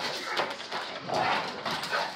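Two large white bulldog-type dogs play-fighting: rough, irregular dog vocalising mixed with the scuffle of their bodies as they wrestle.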